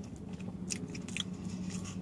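A person chewing a mouthful of chili cheese pretzel-bun hot dog with the mouth closed: a few faint, soft clicks over a low steady hum inside a car.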